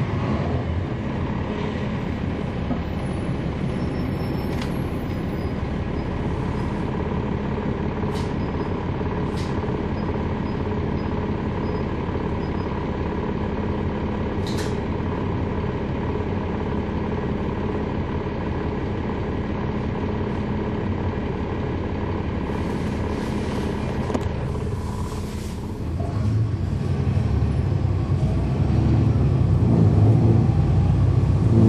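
Cab-interior sound of a 2011 NABI 40-ft transit bus: its Cummins ISL9 inline-six diesel running steadily with the whistle of its ZF Ecolife six-speed automatic transmission, and a few short hisses of air. About four-fifths of the way through the sound dips briefly, then the engine grows louder to the end as the bus accelerates.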